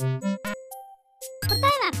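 Electronic quiz countdown jingle, bright chiming synth notes over short bass pulses, which stops about half a second in; after a short pause a voice announces the answer over new music with a steady bass.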